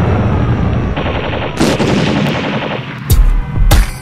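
Rapid machine-gun fire sound effect laid into a break in a hip-hop track. About three seconds in, the beat comes back in with heavy kick drums.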